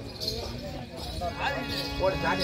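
Voices with the clip-clop of stamping feet and the jingle of performers' ankle bells; a steady held note comes in near the end.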